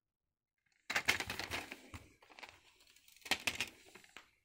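Plastic multi-disc DVD case being handled as its hinged inner disc tray is flipped over: a cluster of plastic clicks and rattles about a second in, and another short burst near the end.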